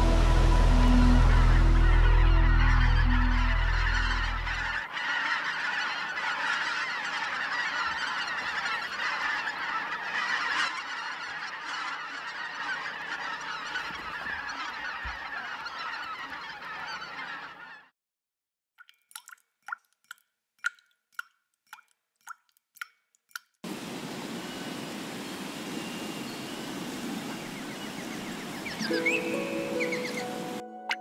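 Geese, white-fronted geese by the look of them, honking: first a dense flock chorus, then about a dozen single honks in near silence, then a steady rushing noise. Soft background music fades out in the first few seconds and comes back near the end.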